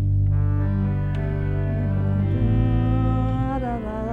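Pipe organ playing a chorale variation: sustained chords over a deep bass line that start abruptly, with the harmony changing about two seconds in.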